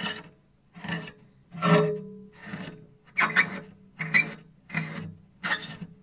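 Cello strings scrubbed hard with a soft cloth to strip off excess rosin: a rough rasping rub, repeated stroke after stroke about eight times, a bit more than once a second, an unpleasant sound.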